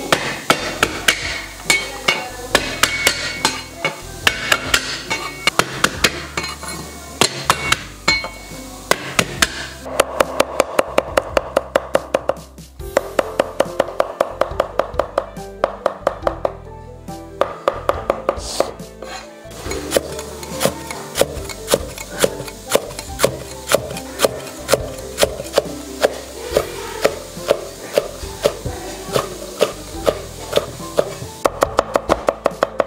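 Kitchen knife chopping vegetables on a thick wooden chopping block: quick runs of sharp strikes, with the fastest run about ten seconds in, over background music.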